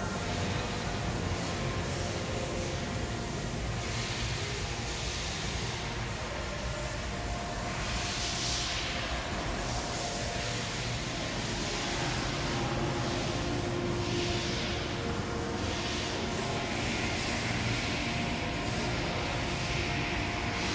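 Steady mechanical background noise: a low rumble and hum with a hiss that swells and fades every few seconds.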